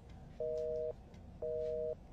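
Telephone busy tone after a dropped call: two half-second beeps about a second apart, each a steady two-note tone.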